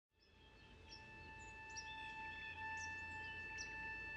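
Small birds chirping, many short calls scattered over a faint steady background, fading in from silence and growing slowly louder.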